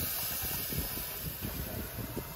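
A steady hiss that slowly fades, with faint irregular ticks underneath.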